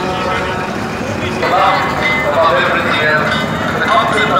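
Steady rumble of decorated float trucks driving past, with a person's voice speaking over it from about a second and a half in.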